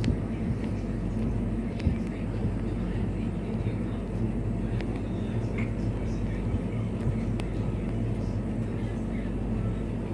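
A steady low rumble of background noise, with a few faint clicks.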